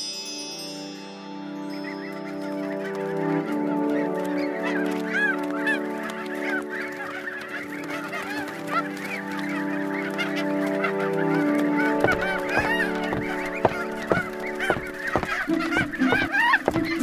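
Seagulls calling again and again over a held, low musical chord that shifts a few times and drops out near the end. A run of sharp knocks begins about twelve seconds in.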